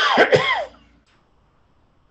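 A person coughing: two loud coughs close together that are over within the first second.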